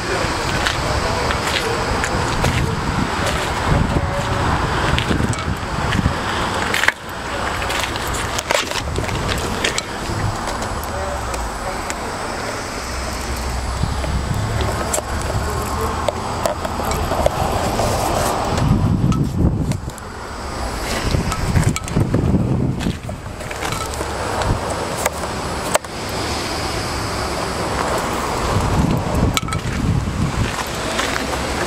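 Wind buffeting a handheld phone microphone outdoors: a continuous rough rumble, with a few sharp handling clicks.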